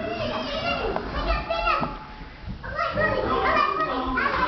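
Children's excited voices shouting and yelling, without clear words, with a short lull about two seconds in.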